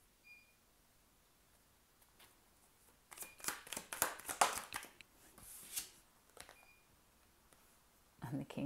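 Tarot cards handled: a quick run of card clicks and flicks from about three seconds in, lasting some two seconds, then a soft slide of a card drawn from the deck.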